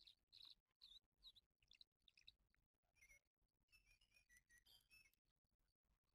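Near silence, with faint, short, high-pitched chirps and whistles scattered through, busiest about four to five seconds in.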